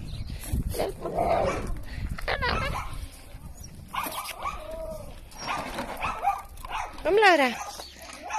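Dogs vocalising close by, ending with a loud, high whining yelp that rises and then falls in pitch.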